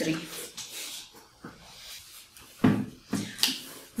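A book being picked up and leafed through: soft rustles of paper pages and a few light handling knocks, quiet between them.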